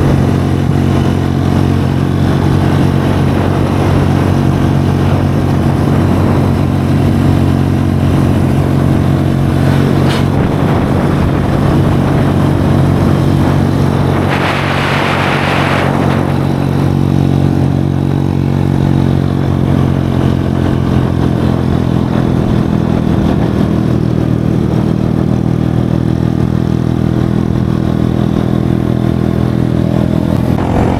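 A motorcycle engine running steadily at cruising speed, heard from the bike itself with road and wind noise. About halfway through there is a brief hissing swell.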